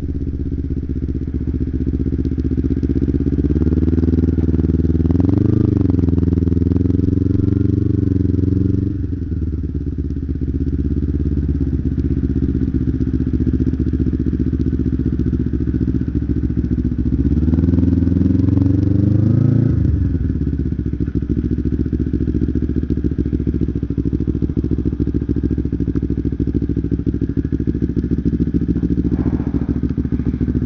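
Kawasaki Ninja 250R's parallel-twin engine heard from the rider's helmet as it rides. Its note climbs twice, a few seconds in and again about two-thirds of the way through, and each time drops back sharply. It then runs steadily at low revs toward the end.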